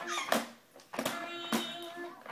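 A baby's hands slapping a plastic electronic activity table, three sharp slaps about half a second apart, setting off short electronic tones from the toy. A brief high squeal from the baby comes near the start.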